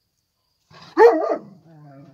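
A dog barks once, loud and short, about a second in.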